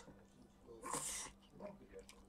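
A man eating with chopsticks between words: mostly quiet, with one short breathy mouth or nose noise about a second in and a few faint small eating sounds after it, over a faint steady hum.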